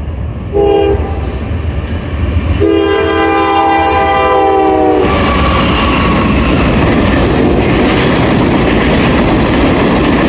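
A freight train's diesel locomotive sounding its multi-chime air horn for the grade crossing: a short blast about half a second in, then a long blast from about two and a half to five seconds in. The train then passes close by, and the locomotive's loud rumble gives way to the clickety-clack of freight car wheels on the rails.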